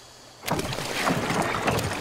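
Oars splashing and churning in river water as a man rows a small boat hard, starting suddenly about half a second in with a dense run of splashes.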